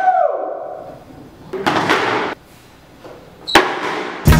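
Music cuts off in a falling pitch slide, like a tape slowing to a stop. About halfway through comes a short scraping noise, and near the end a single sharp knock.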